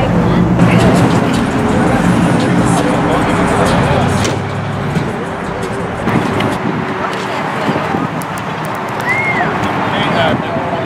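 A car engine running, its low steady sound fading out about halfway through, under people talking.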